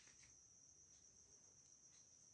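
Near silence: room tone with a faint, steady high-pitched tone.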